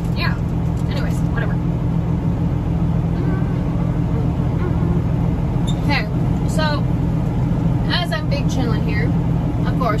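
Semi-truck's diesel engine idling steadily, a low even hum heard from inside the cab.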